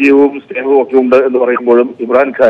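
A man speaking over a telephone line, the voice thin and narrow as phone audio is.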